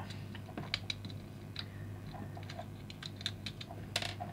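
Light, irregular clicks and taps of fingers and fingernails working at the plastic chassis of a small Choro-Q pullback toy car, trying to flex a retaining tab that will not release.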